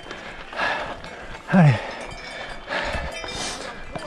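Gravel bike rolling uphill on a loose gravel track: tyres crunching over stones, with two louder rushes of noise about a second and three seconds in. A rider shouts "Allez" once, briefly.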